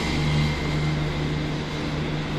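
Steady city background noise: road traffic from the street below under a constant low hum.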